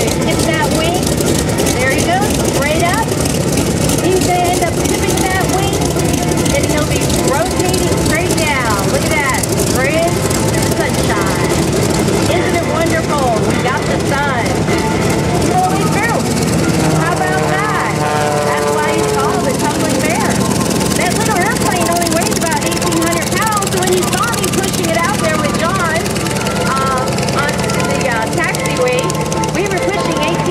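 Radial piston engines of taxiing WWII Navy fighters, among them an FM-2 Wildcat, running at low power as a steady loud drone. A little past halfway one engine's pitch drops over a few seconds.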